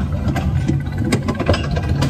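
Kiddie roller coaster car rolling along its track: a steady low rumble with scattered clacks.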